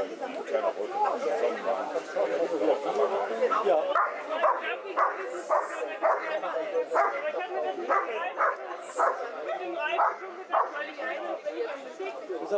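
German Shepherd barking repeatedly, short sharp barks about two a second starting about four seconds in, over a steady background of people talking.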